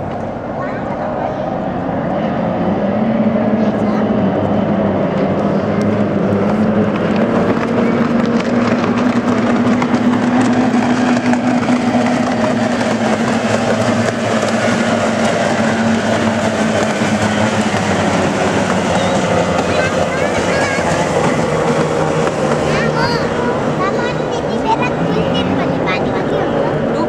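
Racing powerboat engines running flat out as the boats pass on the water, a continuous loud drone that builds about two seconds in and holds, its pitch sagging slightly after the middle.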